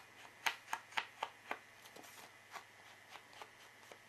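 A run of light, sharp taps, about four a second, then a few fainter ones, as an ink pad is dabbed along the edge of a kraft cardstock panel to ink it.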